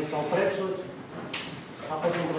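A man speaking, giving a talk.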